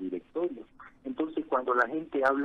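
Speech only: a man talking in Spanish, the sound narrow and phone-like.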